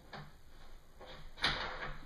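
A single sharp click about one and a half seconds in, as the extension table's locking hardware is unlocked.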